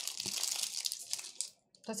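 Cereal bar's wrapper crinkling as it is peeled open by hand, stopping about a second and a half in.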